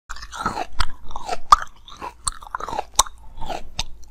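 Mouth biting and chewing crunchy basil-seed ice: a sharp crunch about every three-quarters of a second, with wet chewing sounds between.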